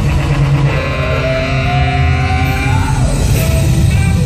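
Loud dance-remix music with heavy bass played over an arena sound system, with a tone that rises slowly through the middle and drops away about three seconds in.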